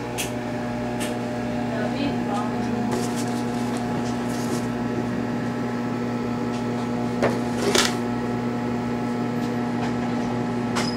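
A steady low electrical hum with a few short clicks and rustles, the loudest two about seven to eight seconds in, over faint background voices.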